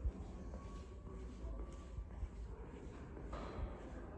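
Quiet room tone with a few faint, irregular soft footsteps on rubber floor matting as a person walks.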